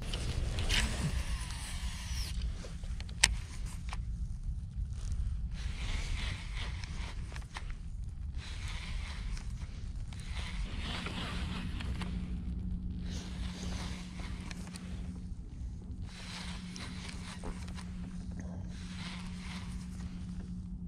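Baitcasting reel: line whirs off the spool on the cast, the reel clicks into gear, then the handle is cranked in short spurts to retrieve a soft-plastic lure, over a low wind rumble. A steady low hum joins about halfway through.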